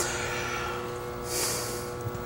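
Low room tone with a steady hum and a short, hissy intake of breath about one and a half seconds in.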